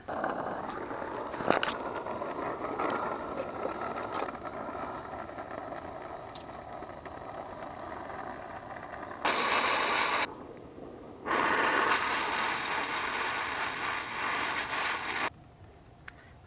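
Brazing torch flame hissing steadily as a copper joint on an air-conditioner liquid-line filter drier is brazed, with a single sharp click a second or so in. The hiss turns much louder twice, briefly and then for about four seconds, and cuts off suddenly near the end.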